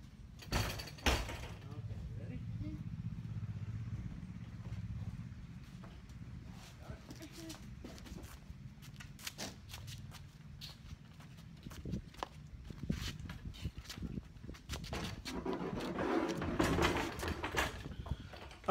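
A couple of sharp knocks about a second in, then a low hum for a few seconds and scattered clicks. Near the end come muffled voices and handling noise as a large plastic rooftop-style cargo box is carried in by two people.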